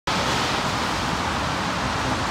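Steady traffic noise from cars passing on a wet multi-lane expressway: an even hiss of tyres on wet pavement with no distinct engine note or horn.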